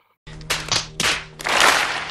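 A few separate claps, then an audience applauding, the claps merging into a dense wash of applause about a second in.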